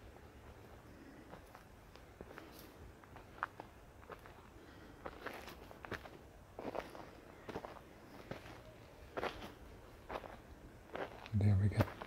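Quiet footsteps climbing a steep forest slope, crunching on dry pine needles, twigs and loose litter, in an uneven pace of roughly one step a second. A man's voice comes in near the end.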